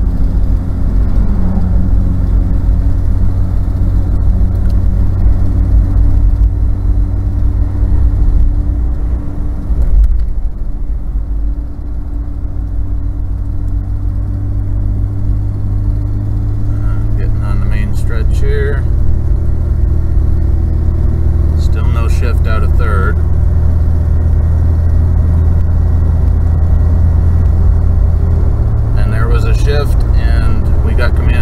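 The 4.0 V6 and road noise of a 1991 Ford Explorer, heard from inside the cab as it accelerates on an automatic A4LD transmission. The level dips briefly about ten to twelve seconds in, then the engine note climbs slowly as speed builds.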